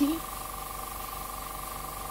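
Small airbrush compressor running steadily at just under 30 PSI, feeding the airbrush: an even hum with a fast, regular pulse.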